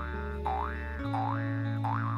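Backing music with a cartoon-style sound effect on top: a quick rising pitch sweep repeated four times, about one every 0.6 seconds.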